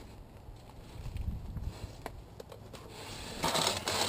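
Rubbing and scraping of hands handling gear on concrete, with a few faint clicks about halfway through and a louder scrape near the end.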